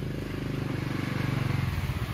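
An engine running steadily at low revs, a low pulsing hum that grows a little louder and turns rougher near the end.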